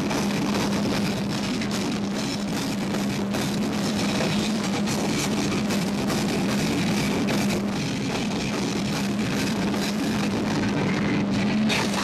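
Heavy hardcore/doom metal band playing live: electric guitar, bass and drum kit, loud and unbroken, over a held low note, with the vocalist screaming into the microphone.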